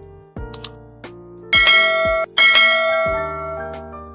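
Background music with two quick ticks, then two loud bell dings a little under a second apart, each ringing out, as a notification-bell sound effect.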